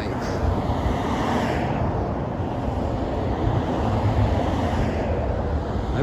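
Steady traffic noise from a busy multi-lane road, swelling briefly about a second in as a vehicle passes.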